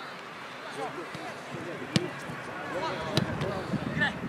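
A football kicked on an artificial pitch: two sharp thuds, one about halfway through and one a little over a second later, among players' calls.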